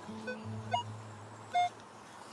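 Background music with held low notes that fade out about one and a half seconds in, over which a metal detector gives two short beeps. The louder second beep comes near the end, as the detector passes over buried metal.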